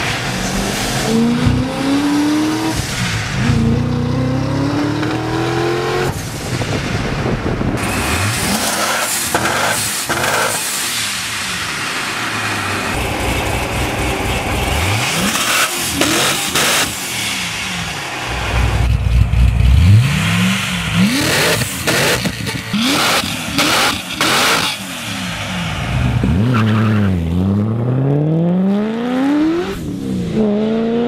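Highly tuned Corvette Z06 V8, billed as 2000 hp, accelerating hard in several separate clips: the engine pitch climbs, drops sharply at gear changes and climbs again. A loud climbing run comes a little past the middle, and near the end the revs fall and rise again.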